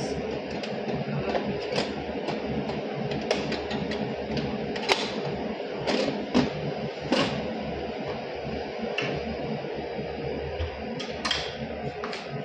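Clear plastic storage boxes and dishes being handled and set onto the wire shelves of a lab incubator: scattered light plastic clicks and knocks, the sharpest about five seconds in, over a steady background hum.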